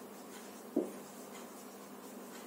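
Marker pen scratching across a whiteboard as words are written, with one sharp knock a little under a second in, the loudest sound.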